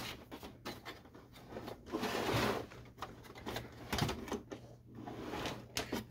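Handling noise from a plastic inkjet printer being tilted and shifted on a bench while cords are worked into the sockets on its back: scattered clicks and knocks, with a short rustle about two seconds in.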